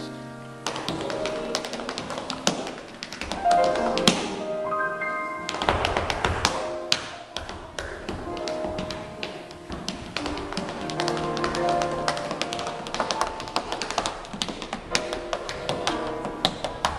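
Tap shoes striking a wooden stage in quick, uneven rhythmic patterns of sharp clicks, over a live band playing pitched notes and chords.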